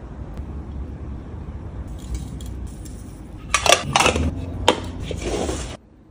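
Metal spoon clinking and scraping against stainless steel lunch containers as sauce is spooned in: a few faint taps, then a louder run of clinks and scrapes in the second half that cuts off abruptly near the end, over a low steady rumble.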